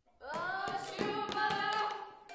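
A voice sings one long held high note, scooping up into it and breaking off near the end, over sharp claps keeping a steady beat of about three a second.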